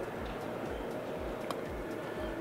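Background music with a steady low beat, about three thumps a second, over the hum of a large exhibition hall, with one sharp click about halfway through.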